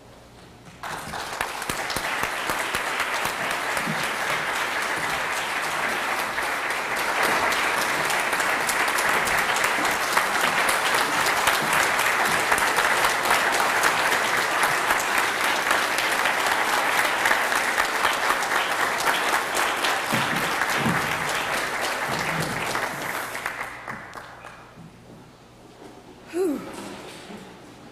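Audience applauding to welcome a speaker. The clapping starts suddenly about a second in, holds steady for over twenty seconds, then dies away near the end.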